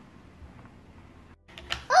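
Quiet room tone with faint handling noise of a die-cast toy car being moved on a plastic playset, and a few light clicks shortly before the end.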